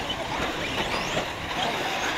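Electric 1/8-scale RC truggies racing on a dirt track: a steady wash of tyre and drivetrain noise with faint, brief rising motor whines about a second in.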